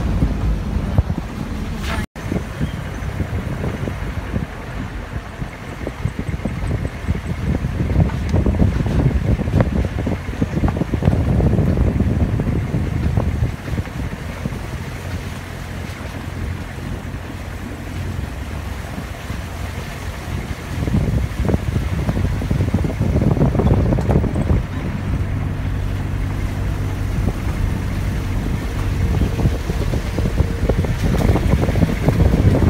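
Wind buffeting the microphone over the running engine of a moving vehicle, a steady low engine hum coming through more clearly in the second half. There is a brief dropout about two seconds in.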